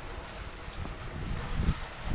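Wind rumbling on the microphone outdoors, a steady low noise with a brief low thump near the end.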